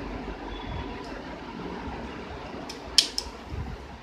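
A few sharp plastic clicks near the end, the middle one a loud snap, as an orange plastic quick-connect hose coupling is pushed onto the outlet of a portable car-washer pump bucket. Underneath is a steady low background hum.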